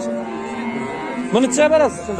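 A cow moos once, a short call near the end, over the murmur of a crowd.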